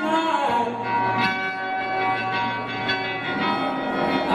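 Live solo acoustic guitar and voice: a sung note falls away about half a second in, then strummed guitar chords ring on with long sustained tones.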